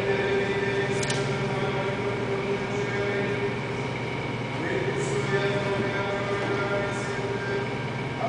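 Sustained church music filling a reverberant church: long held chords, with the whole chord changing once, a little past halfway, and faint light clicks scattered over it.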